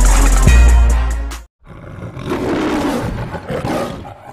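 Music with a heavy bass beat cuts off about a second and a half in. It is followed by the recorded lion's roar of an MGM-style studio logo, rising in two surges and fading at the end.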